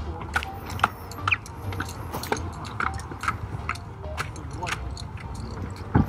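Footsteps crunching on a gravel hiking path, roughly two a second, over a low rumble of wind on the microphone.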